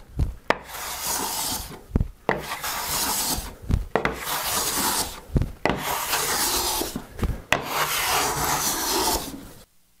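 A Bailey-pattern smoothing plane is making about five strokes along a figured white oak board, each stroke a scraping hiss lasting a second or so. Between strokes there is a short knock as the plane is set back down. The iron is very sharp, the mouth tight and the chip breaker set close, and it is taking very light shavings to clear tear-out.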